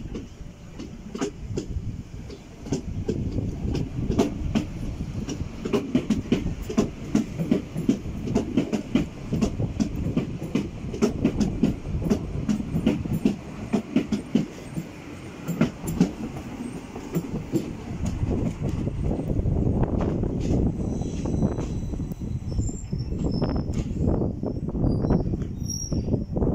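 Yellow Berlin U-Bahn small-profile train running past close by, its wheels clattering in quick clicks over rail joints and points under a steady rumble. A faint high wheel squeal comes in near the end.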